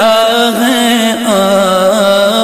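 Male vocalist singing a Muharram kalaam, an Urdu devotional lament, in a slow, ornamented melodic line. He draws out the closing word of the line over a steady lower drone.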